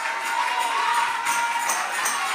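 Church worship music starting up: a held note sounds while a tambourine comes in with regular shakes, about three a second, in the second half, over the noise of the congregation.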